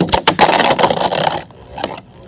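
Beyblade Burst tops launched into a plastic stadium and clashing: a sharp click at the launch, then a dense rattling and scraping of the spinning tops striking each other and the plastic for about a second and a half. A few lighter clicks follow as one top is knocked out into the stadium's pocket for a ring-out.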